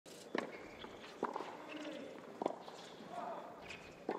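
Tennis ball struck by racquets in a rally: a serve, then returns, three sharp hits about a second apart.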